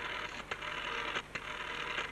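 Rotary telephone dial being dialled: the dial whirs back after each digit, several digits in quick succession, with clicks between them.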